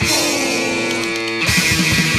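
Punk rock band recording: a held electric guitar chord rings over a cymbal wash, then the drums and full band come back in at a fast beat about one and a half seconds in.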